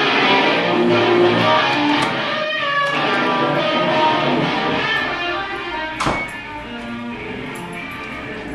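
A guitar played solo, a quick run of single notes changing pitch, with a sharp click about six seconds in.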